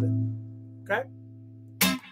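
Clean electric guitar with Lollar pickups, an A minor 7 chord ringing and dying away over the first half-second. A brief vocal sound follows about a second in, and a short sharp noise comes near the end.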